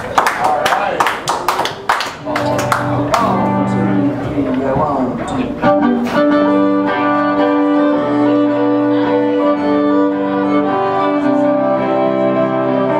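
A few claps and voices fade out in the first seconds as a fiddle starts the song with long bowed notes over upright bass. About six seconds in the rest of the band comes in and the music grows fuller.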